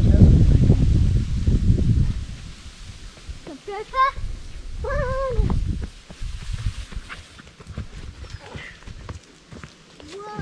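Wind buffeting the microphone as a loud low rumble for about the first two seconds. A few seconds in come two short high-pitched vocal calls that rise and fall in pitch.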